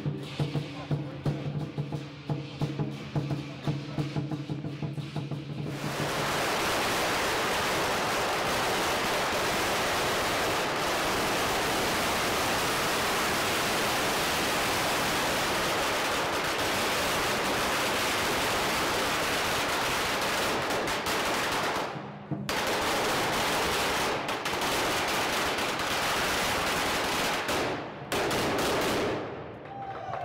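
Lion-dance drumming for the first few seconds, then a long string of Chinese firecrackers goes off in a dense, continuous crackle of rapid bangs lasting over twenty seconds, with two brief breaks near the end.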